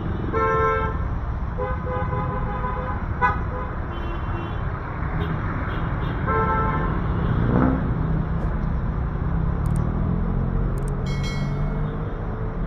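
Vehicle horns sound in short toots three times: about half a second in, between two and three seconds, and around six and a half seconds. Underneath is the steady rumble of street traffic with motorcycles and tricycles, and an engine note rises about seven and a half seconds in.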